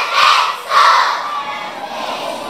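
A large group of young children shouting a line in unison: loud shouted syllables in the first second or so, dropping to a quieter mix of voices.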